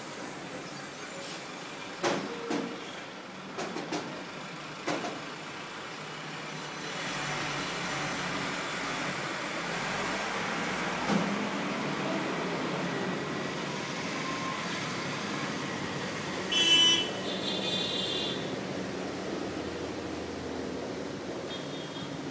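Steady noise of road traffic that swells from about seven seconds in, with a few sharp knocks in the first five seconds and a brief loud sound about seventeen seconds in.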